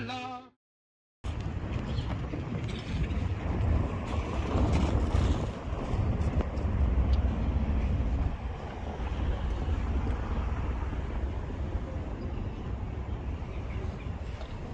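Intro music cuts off, and after a short silence there is an outdoor field recording dominated by wind buffeting the microphone. This gives a deep, uneven rumble under general open-air ambience.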